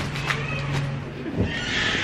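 A pet cat's drawn-out, whining meow near the end, just after a soft thump.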